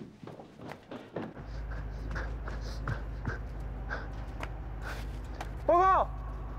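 Footsteps on a hard floor for about the first second, then a steady low hum with scattered light taps. A short, loud voiced call comes near the end.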